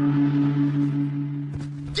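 A gong ringing on after a mallet strike, a sustained low hum with a pulsing wobble that slowly fades. A couple of soft low thumps come near the end.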